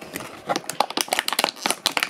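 Clear plastic blister tray crackling and clicking as it is flexed by hand to push toy figures out of its pockets: a quick, irregular run of sharp crackles.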